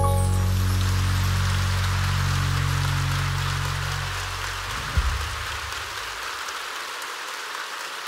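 Audience applauding as the band's last low chord is held and fades away, ending with a single thump about five seconds in; after that the applause goes on alone.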